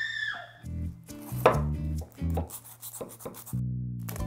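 Background music with a steady beat, over a kitchen knife cutting through a foil-wrapped burrito: crackling foil and sharp knife strokes on the plate.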